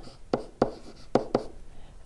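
A stylus writing on a pen surface: a handful of short taps and scratches as the strokes are put down.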